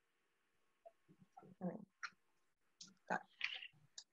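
Videoconference audio that is mostly near silence, broken by a few faint, brief snatches of voice about one and a half and three seconds in.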